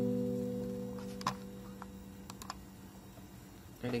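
Acoustic guitar chord ringing out and fading away at the end of a bolero strumming pattern, followed by a few faint clicks.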